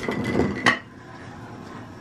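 Spice jars being set down on a wooden tabletop: a short clatter that ends in one sharp clink less than a second in.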